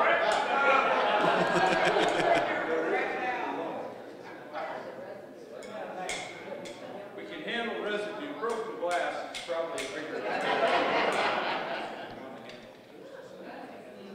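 Many people talking at once in a large hall, louder in the first few seconds and again around ten seconds in, with a few light clicks.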